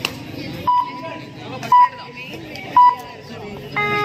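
Three short electronic beeps about a second apart, then a lower, buzzier electronic tone near the end, over a murmur of crowd voices.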